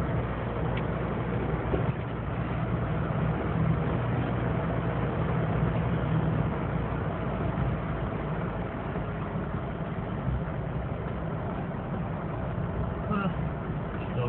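Steady road and engine noise heard inside a car cruising down a winding mountain road, with a low rumble underneath.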